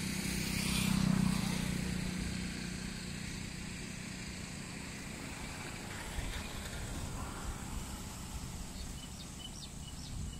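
Outdoor ambience with a low engine hum, a passing motor vehicle, that swells about a second in and then fades away. A few faint, short high chirps come near the end.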